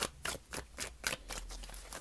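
Tarot cards being shuffled and handled: a run of quick, irregular card clicks and snaps, the sharpest one at the start.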